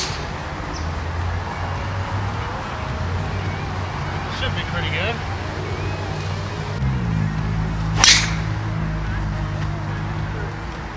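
A golf driver striking a ball off the tee about eight seconds in: a single sharp crack, over steady background music.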